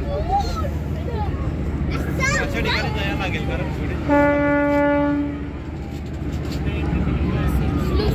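A ferry's horn sounds one steady blast of about a second and a half, a few seconds in. Under it run a steady low rumble and people talking.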